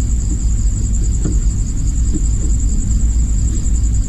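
A steady, high-pitched pulsing trill over a constant low rumble, with a few faint ticks.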